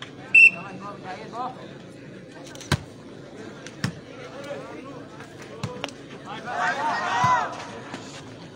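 A referee's whistle gives one short blast, then a volleyball is struck with a sharp smack about two seconds later, followed by another hit about a second after. Men shout briefly near the end.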